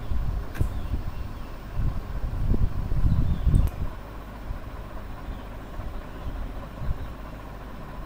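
Low rumbling background noise that swells for about two seconds near the middle, with a couple of faint clicks.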